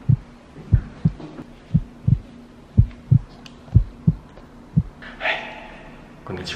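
Heartbeat sound effect: pairs of low lub-dub thumps at about one beat a second, stopping about a second before the end. It marks nervousness, a pounding heart.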